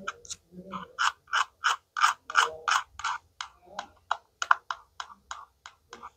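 Repeated rasping scratches on a plastic toy orange slice and its velcro pad, about three short strokes a second, sometimes coming in quick pairs.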